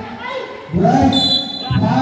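Men's voices calling out on a basketball court, and a referee's whistle blown once about a second in, a steady high tone lasting under a second.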